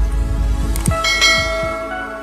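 Logo-intro sound effects: a few deep, downward-sweeping booming hits, then a bell-like chime about a second in whose tones ring on and slowly fade.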